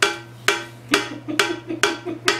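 A steady beat of metallic clanks, about two a second, each ringing briefly like a cowbell.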